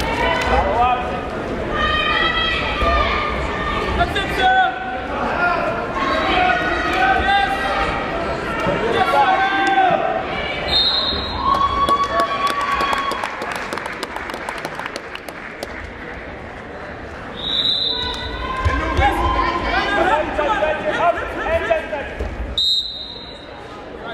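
Coaches and spectators shouting unclear words during a freestyle wrestling bout, echoing in a large gym, with thuds of the wrestlers' feet and bodies on the mat. The shouting eases off briefly in the middle and picks up again.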